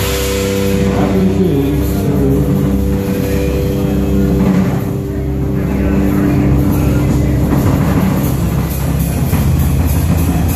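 A live fusion trio of double bass, electric bass guitar and drum kit playing an instrumental passage. Long held notes ring through the first half over steady drumming, with a brief dip in loudness about halfway through.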